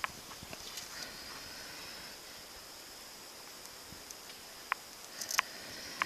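Quiet outdoor background with a steady high-pitched insect drone, broken by a few short clicks and taps, the loudest two near the end.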